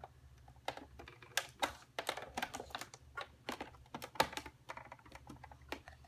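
Sizzix Big Shot die-cutting machine being hand-cranked, the acrylic cutting pads and steel framelit dies passing between its rollers with a run of irregular sharp clicks and cracks, over a faint steady low hum.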